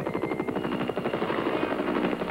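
Bell UH-1 "Huey" helicopters in flight, the main rotor blades beating in a rapid, even rhythm.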